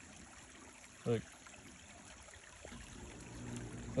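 Soft, steady trickle of a shallow creek's flowing water.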